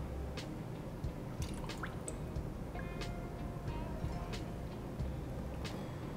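Melted soy wax poured from a metal pouring pitcher into a glass candle jar, with small drips and clicks over quiet background music.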